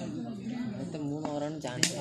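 Men's voices talking and calling out across an open cricket ground, with a few sharp snapping sounds starting near the end.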